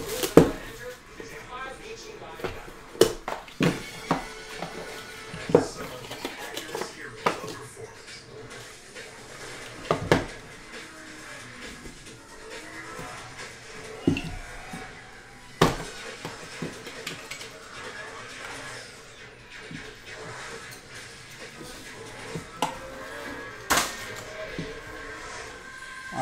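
Plastic shrink wrap crinkling as a trading-card box is unwrapped. Then come a dozen or so sharp clicks and taps of hard plastic card cases and cards being handled and set down on the table. Faint background music and voices run underneath.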